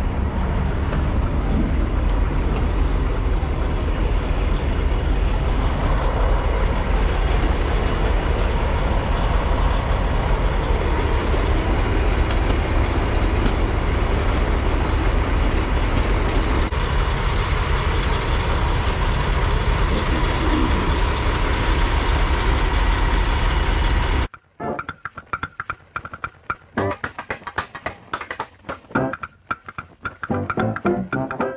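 Steady, loud low rumble of idling diesel semi-trucks. About 24 seconds in it cuts off abruptly and background music with brass instruments takes over.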